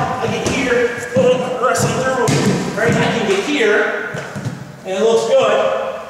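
A man's voice talking, with a few thuds of bodies landing on a wrestling mat during a takedown.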